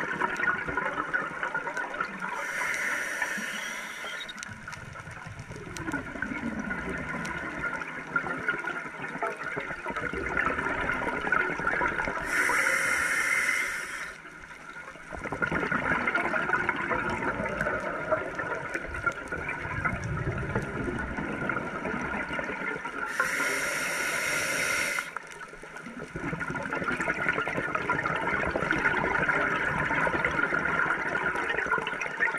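A scuba diver breathing through a Mares regulator underwater, recorded close up. Three slow breaths: a short hiss from the demand valve on each inhale, about every ten seconds, then the exhaled bubbles gurgling and rushing up past the camera.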